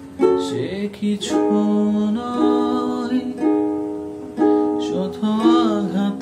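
A man singing a slow Bengali song, holding long notes with a waver near the end, over a plucked-string accompaniment in a small room.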